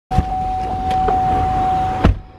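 Inside a car, a steady electronic warning tone sounds over the low rumble of the car, with a few short clicks as the door is worked open. It starts and stops abruptly.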